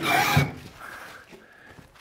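Heavy wooden timber beam scraping and sliding against a pickup truck's bed as it is shoved in: a short rough scrape with a knock near the start, then much quieter.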